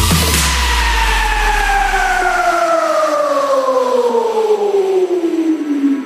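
Electronic dance music transition: a synth sweep falling slowly and steadily in pitch over about six seconds, like a siren winding down. A deep bass under it fades out about halfway through.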